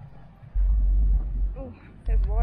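Wind buffeting the phone's microphone in a gust, a low rumble that rises about half a second in and dies down again, with a faint voice near the end.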